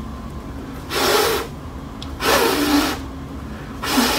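Hard breaths blown out through a surgical face mask at a lit match in a match test of how much breath the mask lets through: two bursts of breath noise about a second apart, and a third starting near the end.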